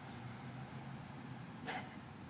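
Steady outdoor background hiss with one short, faint dog bark near the end.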